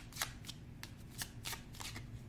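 A tarot deck being shuffled by hand: a run of sharp, irregular little clicks as the cards slip and drop.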